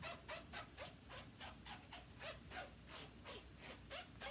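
Faint, rhythmic rubbing strokes, about four a second, each with a small squeak, from scrubbing or wiping while cleaning up stamping supplies.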